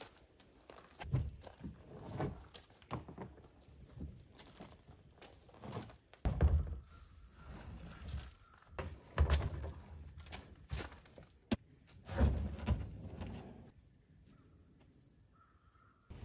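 A plastic kayak being wrestled up off a gravel lot single-handed: irregular dull thumps and scrapes of the hull being heaved and set down, with shuffling footsteps on gravel. A steady high insect buzz runs underneath.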